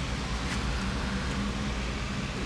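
Steady low background hum with a faint hiss, with no distinct event: workshop room noise.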